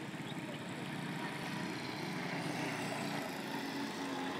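A motor vehicle engine running steadily, a low even hum over outdoor background noise.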